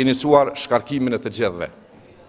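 Speech only: a man speaking at a lectern, falling silent for a short pause near the end.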